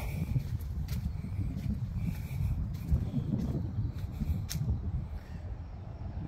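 Uneven low rumble of wind on a phone microphone outdoors, with a few faint footstep sounds on gravel.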